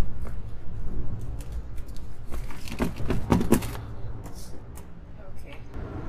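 Wind buffeting the microphone as a steady low rumble, with a burst of rustling and crackling handling noise around the middle as soil and compost mix are worked by hand.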